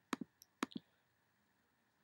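Computer mouse clicking faintly: a quick double click, then a few more single clicks, all within the first second.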